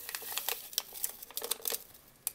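A plastic Crystal Light drink-mix packet being opened and handled, its wrapper crinkling in a run of small irregular crackles.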